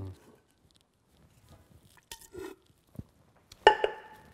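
A stainless steel bucket handled on a stone countertop: a short scraping rattle about two seconds in, then the bucket set down near the end with a sharp metallic clank that rings on briefly.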